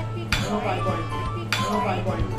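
Background music with a steady beat and a singing voice.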